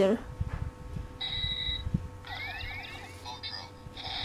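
Electronic sound effects from the DX Mystic Morpher flip-phone toy's small speaker as its keypad is pressed. A short steady beep comes about a second in, then a quick run of rising chirps, with light button clicks and handling.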